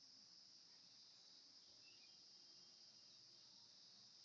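Near silence: faint steady hiss.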